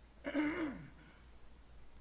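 A man clears his throat once, briefly, the sound falling in pitch as it ends.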